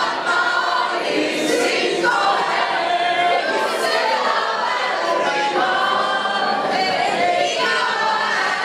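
A large group of teenagers singing a song together, as a chorus of mixed voices.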